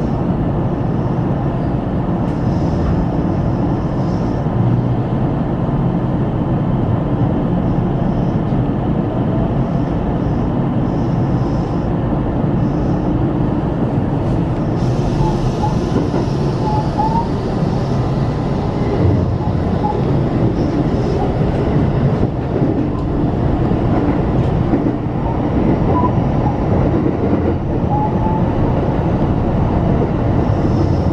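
Electric train running, heard from inside the driver's cab: a steady rumble of wheels on rail. A few faint short squeaks come in the second half.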